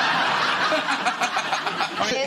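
Studio audience laughing at a joke, a dense crowd laugh that eases slightly toward the end.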